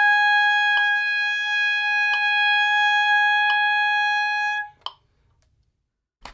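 Alto saxophone holding one long, steady high note that stops about three-quarters of the way through, followed by silence. Faint clicks sound about every second and a half under the note.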